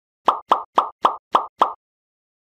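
Six quick pop sound effects, about four a second, one for each drink-bottle graphic popping onto the screen.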